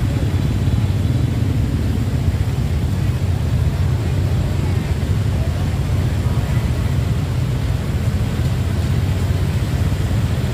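Steady low rumble of street traffic, motorbikes and cars, with faint voices in the background.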